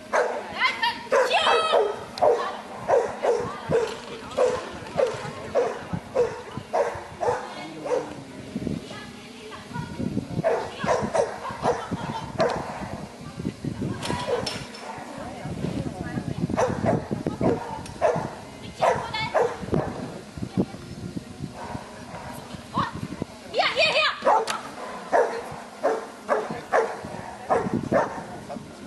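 A dog barking repeatedly, about twice a second, in runs broken by short pauses.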